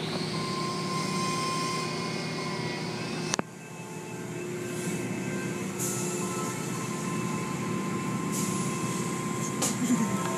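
Automatic tunnel car wash heard from inside the car's cabin: water spraying and cloth wash strips sweeping over the windshield and body, over a steady machinery hum. About a third of the way in there is a sharp click and the sound drops suddenly, then builds back up.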